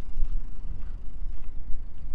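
Low, uneven rumbling noise with no distinct events on top.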